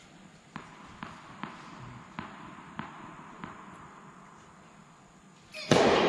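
A tennis ball bounced on a hard court, about six bounces roughly half a second apart, then a sudden much louder noisy crackle near the end.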